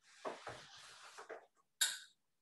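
Rustling and handling noises as a drink of water is reached for and picked up, with a short sharp click near the end.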